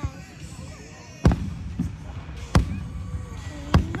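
Aerial fireworks bursting: three sharp bangs about a second and a quarter apart.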